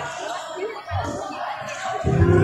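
Basketball bouncing on a hard court, with a thump about a second in and another near the end, amid voices in a large echoing hall.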